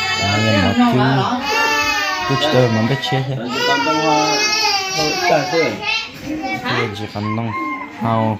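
A high-pitched voice crying in long, wavering wails, with a lower adult voice speaking underneath.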